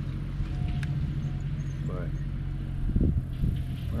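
A steady low engine hum throughout, with a short low thump about three seconds in.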